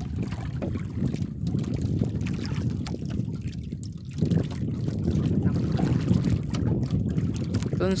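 Uneven low rumble of wind buffeting the microphone and water lapping against a small outrigger fishing boat, with a few faint knocks from the hull.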